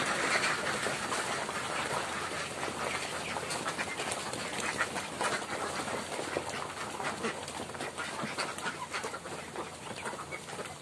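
A large flock of domestic ducks at feeding, many quacking at once in a dense, continuous chorus that gradually gets quieter.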